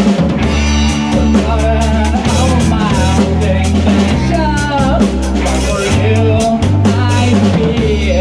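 A rock band playing live: drum kit, distorted electric guitar through an amplifier and bass guitar, with a male voice singing the melody over them.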